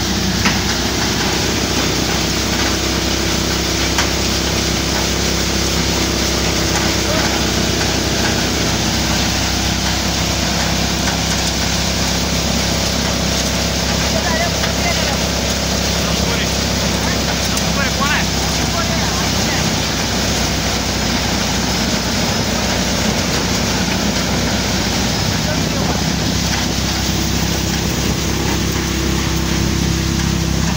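Soybean cutter thresher running steadily under load: a constant mechanical drone and rush from the machine's engine and threshing drum while it threshes soybean plants and delivers grain from its outlet chute.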